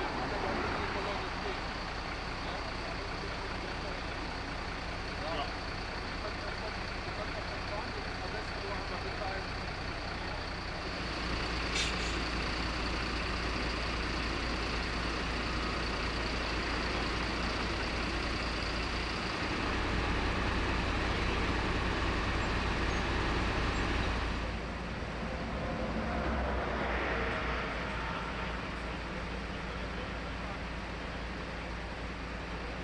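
Heavy truck engines idling, a steady low rumble that grows louder about eleven seconds in and again for a few seconds past the twenty-second mark, with a faint high steady whine in the first half. People talk in the background.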